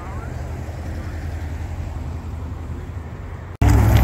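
Steady low rumble of wind on the microphone, with faint talking near the start. About three and a half seconds in, the sound cuts off for an instant and comes back noticeably louder.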